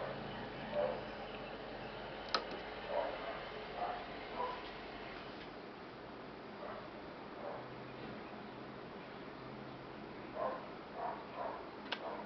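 A faint single click about two seconds in: a desktop PC's power button being pressed to start it from cold. Small scattered faint sounds follow over a low steady hum.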